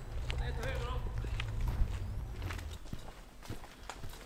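Footsteps of a person walking on pavement, sharp steps about every half second in the second half. A voice is heard briefly in the first second, over a low rumble that dies away near the three-second mark.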